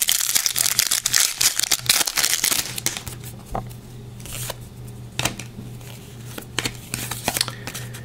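A trading card pack's wrapper crinkles and tears densely for the first three seconds or so. Then comes sparser rustling and clicking as the cards are slid and handled against each other, over a low steady hum.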